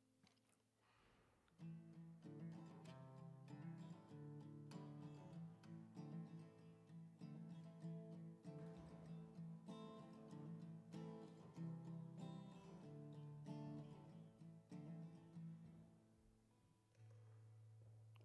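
Solo acoustic guitar playing a quiet instrumental passage: a run of plucked chords over a steady low bass note, starting about a second and a half in and dying away shortly before the end.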